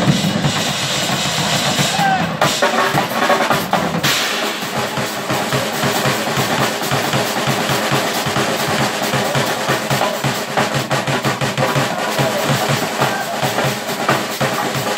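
Several Yamaha drum kits played together in a live drum jam. The playing turns into a fast, dense pattern with rapid bass-drum strokes about four seconds in.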